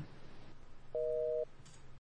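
Telephone busy-signal tone: a single half-second beep of two steady tones sounding together, about a second in, matching the North American busy signal.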